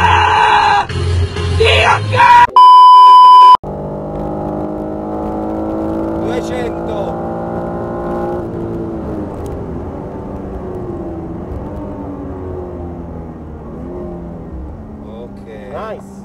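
A man yelling in a loud, distorted inserted clip, cut off by a loud single-pitch beep lasting about a second. Then the in-cabin sound of a BMW M3 Competition's twin-turbo straight-six held high in the revs under full throttle, its note climbing slowly, until about halfway through the throttle is lifted and the note drops and wavers as the car slows for a corner.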